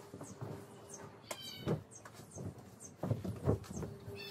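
A large bedspread being shaken out and spread over a bed: fabric flapping and rustling, with soft thumps as it lands, the loudest just after the middle. A short high squeak or chirp sounds about a second in.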